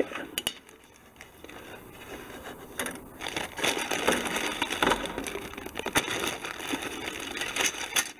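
Clear plastic kit bag crinkling and rustling as styrene sprues are handled and slid out of it, with a few sharp clicks among the crackle. It is briefly quieter about a second in, then busier from about three seconds in.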